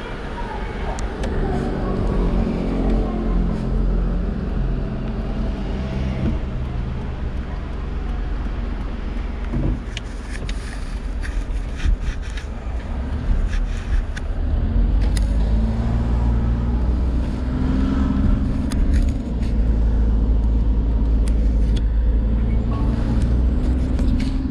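Car engine and tyre noise heard from inside the cabin as the car pulls away and drives off, with scattered light clicks and rattles. The engine gets louder from about halfway through as the car speeds up.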